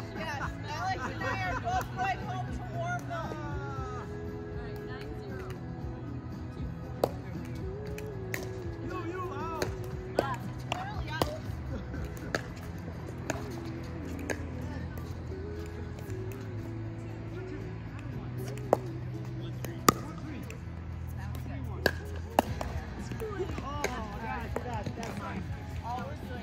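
Background music with a steady bass line runs throughout. Over it come sharp pops of pickleball paddles striking a hard plastic ball in a rally, scattered singly and in quick pairs, the loudest around two-thirds of the way through.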